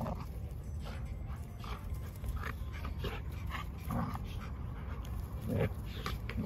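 A German shepherd and another dog play-fighting, with short dog noises scattered through the play; the largest comes about four seconds in and another near the end.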